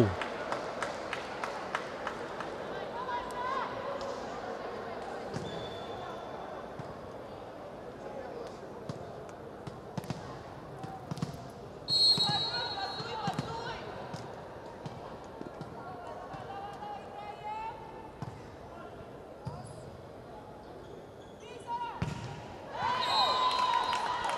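Indoor arena ambience between volleyball rallies: a volleyball bouncing on the court floor in scattered knocks over a murmur of crowd voices, with a short referee's whistle about halfway through.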